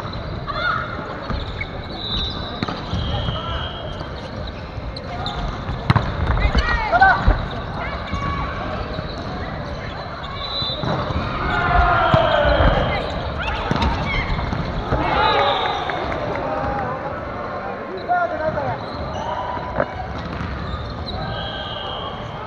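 A volleyball rally on a gym floor: the ball being struck several times, loudest about six, seven and twelve seconds in, with sneakers squeaking on the wooden court and players shouting, all echoing around the hall.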